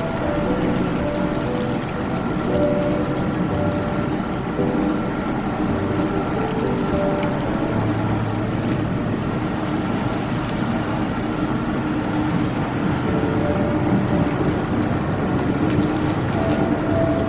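Whirlpool bathtub jets running, a steady churning of water and air through thick foam, with soft background music over it.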